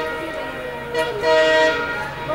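Multi-tone air horn of a WDP-4D diesel locomotive: a long blast breaks off at the start, then two short blasts follow about a second in, over the rumble of the trains.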